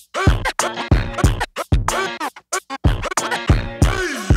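Vinyl record scratched by hand on a turntable over a hip-hop beat: the scratched sound glides up and down in pitch and is chopped into many short, sharp cuts with the mixer's fader.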